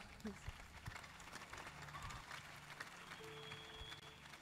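Quiet hall ambience with a faint steady low hum and scattered small noises. A soft held musical note comes in about three seconds in.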